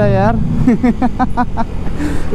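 A man talking over a KTM 390 Duke's single-cylinder engine running at road speed, with a steady low rumble of engine and wind underneath.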